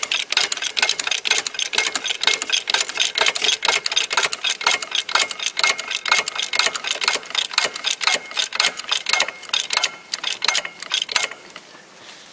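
Hydraulic floor jack being pumped by its handle to raise a car: a fast, even run of metallic clicks, several a second, that stops about a second before the end.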